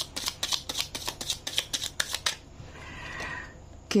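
A deck of cards being shuffled by hand, a quick run of crisp card flicks and snaps that stops about two seconds in, leaving only faint rustling.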